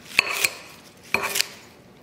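Metal blade cutting leafy greens in a bowl: two pairs of sharp metallic clicks, one near the start and one about a second in, each with a brief ring.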